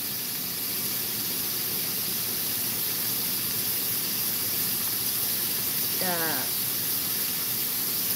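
Sliced onions and carrots sizzling in soy sauce in a wok over a high gas flame, a steady hiss.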